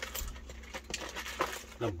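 Several light metallic clicks and clinks from hands working on a battery charger's wires and fittings.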